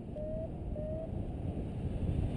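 Wind buffeting the camera microphone of a paraglider in flight, a steady low rumble. Two short, faint, slightly rising beeps sound in the first second.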